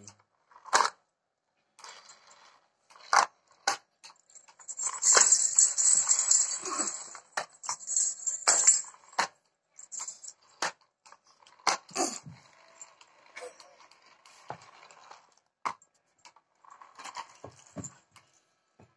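Scattered clicks and knocks of plastic and wooden toys being handled, with a louder, noisier stretch of rattling from about five to nine seconds in.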